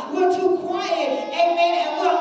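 A woman singing into a microphone: a few held notes, each about half a second long, with a slight waver.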